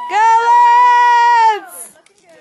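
A spectator's loud, high-pitched cheering yell, one long note held for about a second and a half.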